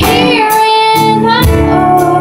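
Live rock band playing: a woman sings long held notes with vibrato over electric guitar and drums, the drums hitting about twice a second.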